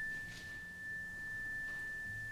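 A struck metal chime ringing on with one clear, high, steady note.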